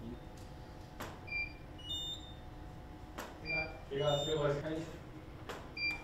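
Camera shutter and studio flash firing three times, about two seconds apart, each shot followed by short high electronic beeps as the strobes recycle. A voice is heard briefly in the middle.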